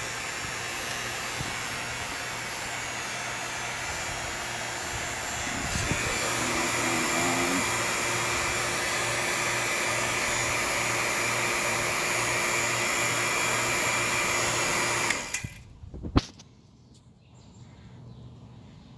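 Refrigeration vacuum pump running steadily while it evacuates an air-conditioning system, getting a little louder about six seconds in. It stops abruptly near the end, followed by a single sharp click.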